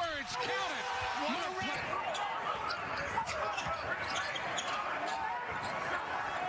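A basketball dribbled on a hardwood arena court amid steady crowd noise, with a voice heard in the first two seconds.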